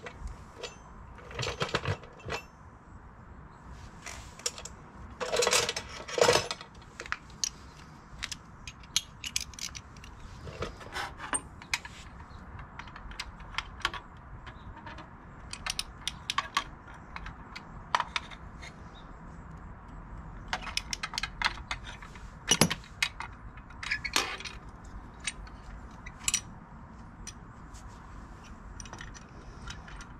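Metal hand tools and small metal parts clinking and clattering as they are handled, in irregular light clicks and knocks, with louder clanks about five to six seconds in and again a little past twenty seconds.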